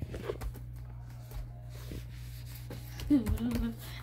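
Rustling and soft low thumps as a handheld phone is jostled and moved about, over a steady low hum, with a brief vocal sound about three seconds in.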